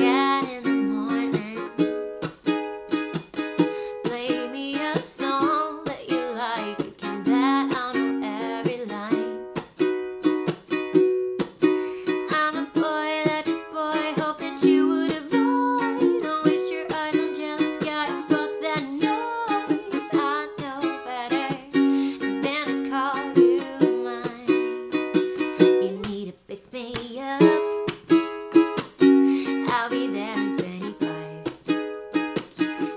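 Tenor ukulele strummed in chords, accompanying a woman's singing voice, with a brief drop in the playing a little after the middle.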